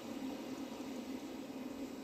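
A steady low hum with an even hiss: room noise, with no distinct events.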